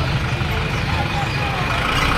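Engine noise of a bus driving slowly past, mixed with the voices of a crowd.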